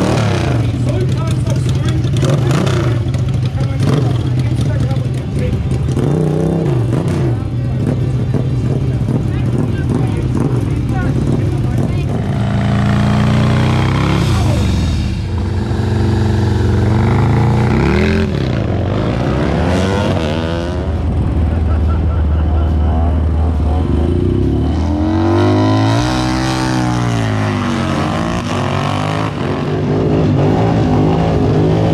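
Sprint motorcycles' engines idling at the start line, revved up and down several times around the middle and once in a long rise and fall near the end.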